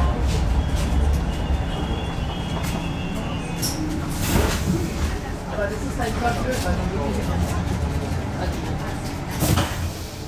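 Interior of a Hamburg S-Bahn class 472 electric train at a station platform: a low running rumble that eases off in the first second or two, then the car's steady background hum with two short thuds, about four seconds in and just before the end.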